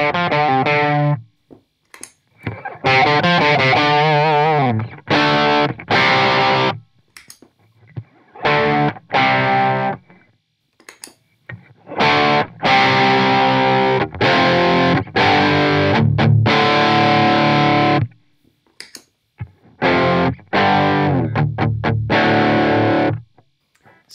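Electric guitar tuned to drop D, played through a JHS Morning Glory V4 overdrive pedal on its low-gain setting into a PRS MT15 amp: lightly distorted open low-string power chords strummed in separate bursts of one to several seconds, with short pauses between.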